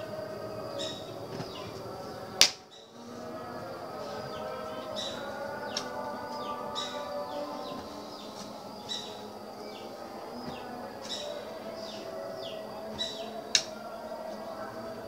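Repeated short high chirps that fall in pitch, about one a second, over a steady drone typical of a night chorus of insects or frogs. A sharp knock sounds about two seconds in, and another near the end.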